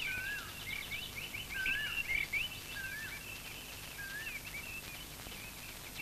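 Birdsong over a steady faint hiss: one bird repeats a short wavering whistle four times, about every second and a half, while others chirp at a higher pitch.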